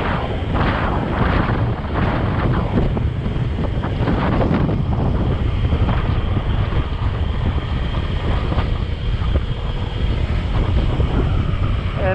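Wind rushing and buffeting over the microphone of a moving motorcycle, with engine and road noise underneath.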